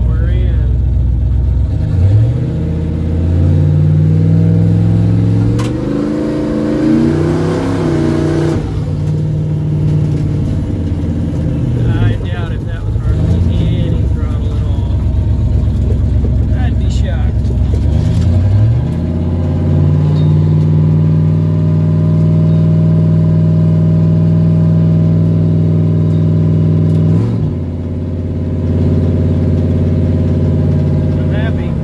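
Turbocharged 351 Windsor V8 of a 1995 Ford Mustang heard from inside the cabin while driving: the revs climb about two seconds in, ease off and pick up again a few times, then hold steady before a brief dip and recovery near the end.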